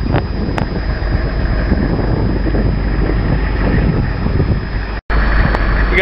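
Steady low rumble of an idling military convoy vehicle's engine, mixed with wind buffeting the microphone. The sound drops out for an instant about five seconds in.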